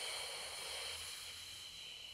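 A woman's long, forced breath out, a steady hiss that slowly fades: the exhale on the effort of rolling the spine up into a bridge during a Pilates pelvic curl.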